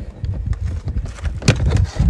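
Plastic retaining clips of a Mazda CX-9 door trim strip snapping free as the strip is pried off with a plastic trim tool: one sharp click about one and a half seconds in, with a few fainter ticks, over wind rumble on the microphone.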